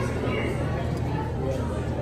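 Indistinct voices of people chatting in an aquarium hall, over a steady low hum.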